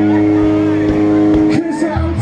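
Live rock band's amplified chord held and ringing as a steady drone, cutting off about one and a half seconds in; after a brief gap the band comes back in with drums and guitar near the end.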